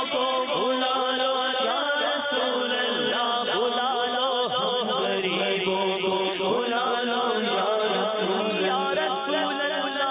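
Men's voices chanting an Urdu naat without instruments: a lead voice sings a winding, ornamented melody over a steady held drone that runs underneath.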